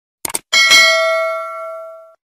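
A quick double click, then a bright bell chime that rings out and fades over about a second and a half: the click-and-ding sound effect of a subscribe-button and notification-bell animation.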